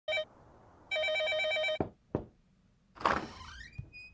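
A house telephone's warbling electronic ring: a short ring, then a longer one of about a second, announcing an incoming call. Two sharp knocks follow, and near the end a noisy swish with a rising tone.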